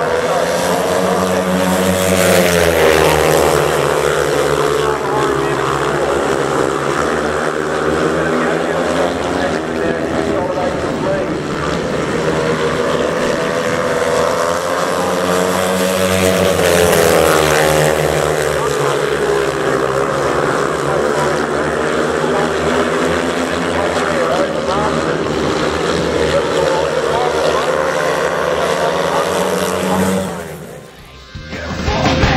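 Four speedway solo bikes racing, their 500 cc single-cylinder methanol engines running hard. The engine note rises and falls as the pack sweeps around the oval, loudest about two seconds in and again about halfway through.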